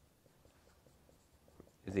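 Faint strokes and taps of a dry-erase marker on a whiteboard as an equation is written, a light scatter of small ticks; a man's voice starts right at the end.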